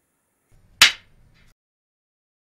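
A single sharp, loud clap about a second in, dying away quickly: the snap of a film clapperboard closing, as a transition sound effect.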